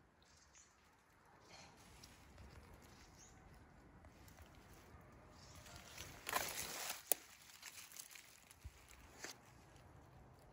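Faint forest quiet, then about six seconds in a short burst of rustling as leaves and undergrowth brush close by, with a sharp click near seven seconds and a few lighter ticks after.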